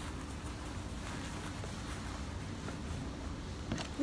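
Quiet room tone with a faint steady hum, and a single short click near the end.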